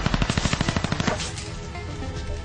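Automatic gunfire sound effect: a rapid burst of shots, about ten a second, lasting about a second, over music that carries on after the burst stops.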